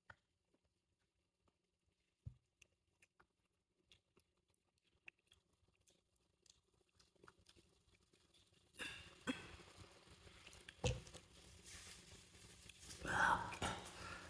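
Faint, scattered swallowing ticks as a man gulps soda from a plastic bottle. Near the end comes a short strained vocal sound as he reacts to the drink's harsh, spicy taste.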